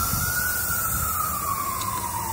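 Emergency-vehicle siren in a slow wail: a single tone that climbs at the start, then slowly falls.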